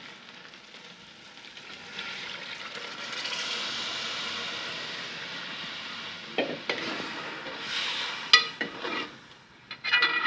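Kofte cooking water being poured into a hot aluminium pot of fried masala and kofte, setting off a steady sizzling hiss that swells about two seconds in and holds for several seconds. A steel ladle then stirs the thinned gravy, clicking against the pot's side a few times near the end, one click sharper than the rest.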